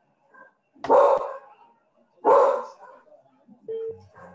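A dog barking twice, two short loud barks about a second and a half apart, coming through a participant's microphone on the video call.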